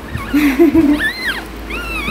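Bamboo rat pups squeaking: two short high squeaks that rise and fall, about a second in and near the end, after a low wavering sound.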